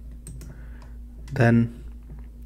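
A few faint clicks from computer keyboard and mouse use at a desk, over a low steady electrical hum on the microphone, with one short spoken word about halfway through.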